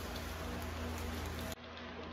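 Steady hiss of background noise with a low, steady hum under it, and a few faint clicks. About a second and a half in, the sound changes abruptly, as at a cut in the recording.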